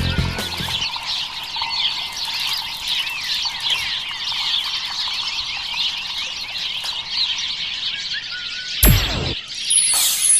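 Recorded birdsong: many birds chirping at once in a meadow soundscape, played through the show's sound system as the end of a song fades out. About nine seconds in comes a short, loud, downward-sweeping whoosh.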